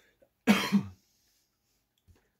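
A person coughing: one short, loud double cough about half a second in.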